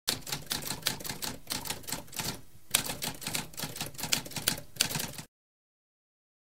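Typewriter typing rapidly: a fast run of sharp key strikes, several a second, with a short pause about halfway through, stopping suddenly a little after five seconds in.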